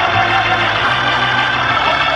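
Loud church music: sustained organ chords over a dense, noisy wash of sound, with the bass note changing just after the start.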